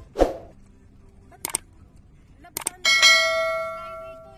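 Subscribe-button animation sound effect: a short whoosh, a few sharp mouse-like clicks, then a bright bell ding about three seconds in that rings on and slowly fades.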